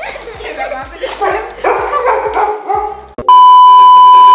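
Lively voices over background music with a steady beat, then about three seconds in a sudden, very loud, steady test-tone beep of the kind that goes with TV colour bars, used here as an editing effect.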